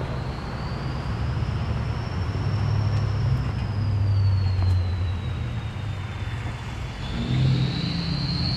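A car engine running in the street, its low hum swelling about halfway through and again near the end, under a thin high whine that drifts slowly up and then down in pitch.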